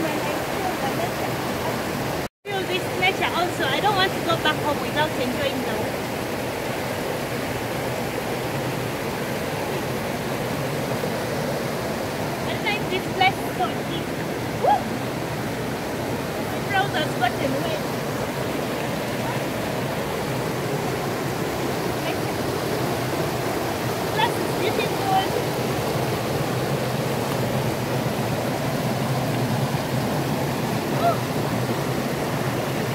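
Shallow rocky stream rushing steadily over stones, a continuous wash of water. The sound drops out for an instant about two seconds in.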